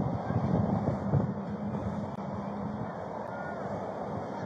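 Vehicle engine running close by with road traffic, a steady low hum under a rushing noise, and wind buffeting the body camera's microphone.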